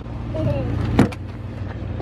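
Limousine idling with a steady low hum, and a single sharp click about halfway through as its rear door is pulled open.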